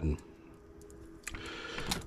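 Light handling noise of servo cables and their small plastic connectors being set down on a work mat. There is a small click about a second in, a soft rustle, and another click near the end.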